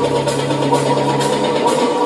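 Electronic dance music from a DJ mix, with a steady held low synth bass note under a busy mid-range layer.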